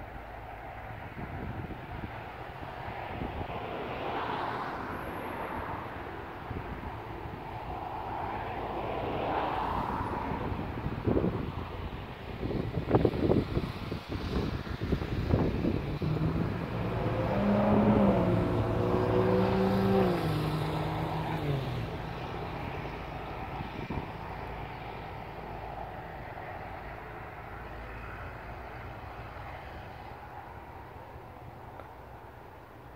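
A motor vehicle's engine passing: it builds slowly, is loudest about two-thirds of the way in with its pitch stepping up and down, then fades away. Wind knocks on the microphone for a few seconds just before the peak.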